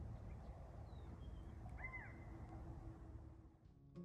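Quiet country ambience: a steady low rumble with a single short bird call about halfway through and a few faint chirps.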